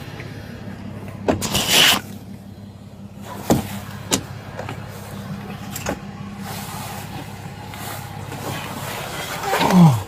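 A vehicle hums steadily at idle while a person is moved into a patrol car's back seat. There is a rustling scrape about a second and a half in and a few sharp knocks and clicks after it.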